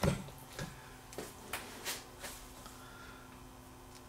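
A few faint, scattered clicks and taps of test leads and their clips being handled, over a low steady hum.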